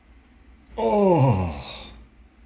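A man's voiced sigh or moan, starting about a second in, gliding down in pitch and fading away: an emotional reaction to the song.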